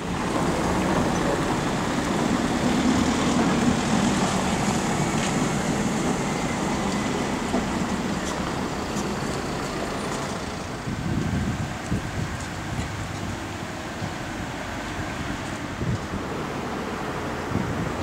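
Town street traffic: a motor vehicle running past, loudest a few seconds in, then a steady traffic hum that slowly eases off.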